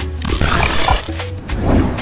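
Intro jingle music with a heavy bass beat, overlaid with a loud, noisy sound effect swelling about half a second in as the show's logo animates.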